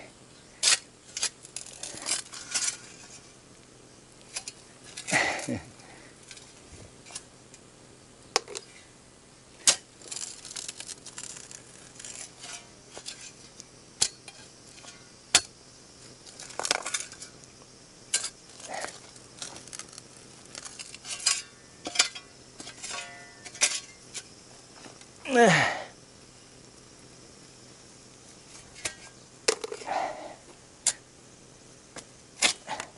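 Hand tools cutting and clearing wild rose stems and roots: irregular sharp clicks, snaps and metallic clinks, with a longer sound falling in pitch about five seconds in and a louder one near the end.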